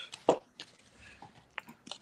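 Cardboard LP record sleeve being handled as it is pulled out and held up: a few short knocks and rustles, the loudest a little after the start.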